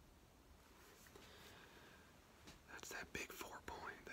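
Near silence, then a man whispering from about two and a half seconds in.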